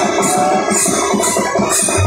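Live procession music from a warkari group: hand cymbals clashing in a steady beat about twice a second, with a wavering held melody line over a low drum.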